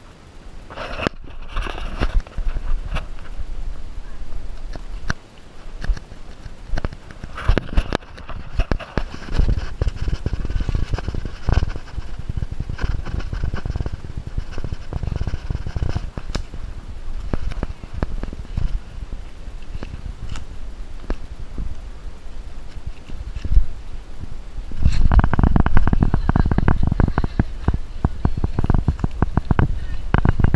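Handling noise from an action camera worn by a climber on a steep trail: irregular scuffs, knocks and rubbing from steps and scrambling over rock and roots, over a low rumble. The knocks become denser and louder about five seconds from the end.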